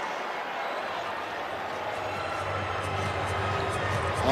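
Hockey-arena crowd and building ambience: a steady, even wash of noise with no single event standing out, and a low hum that grows about halfway through.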